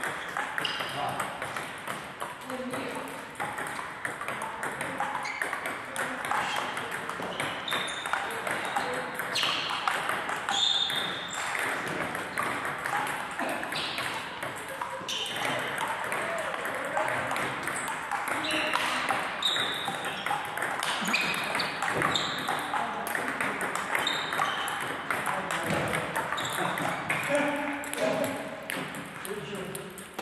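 Table tennis balls clicking off bats and tables in rallies, the irregular hits coming from more than one table, with people talking in the hall throughout.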